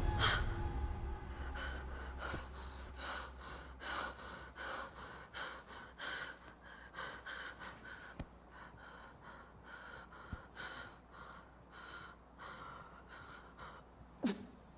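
A woman's quick, frightened breathing with gasps, about two breaths a second, over a low steady hum.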